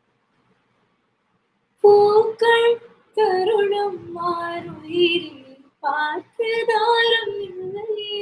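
A woman singing a line of a Tamil film song unaccompanied, starting about two seconds in, in several phrases with long held notes and short breaks between them.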